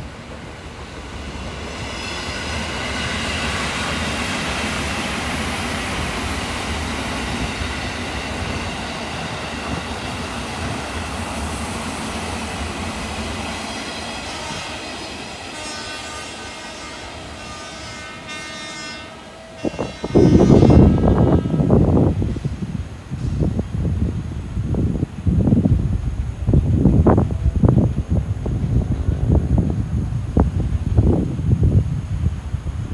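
KRL Commuter Line electric train running past on the tracks, its rolling and wheel noise swelling and then fading, with a sustained horn sounding late in the pass. About twenty seconds in, loud gusting wind buffets the microphone.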